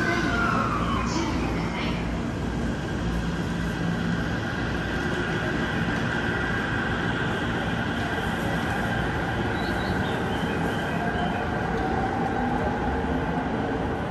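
Musashino Line electric commuter train pulling out of the platform: running rumble with a motor whine that glides in pitch near the start, then a steady high whine, and another slowly rising tone near the end.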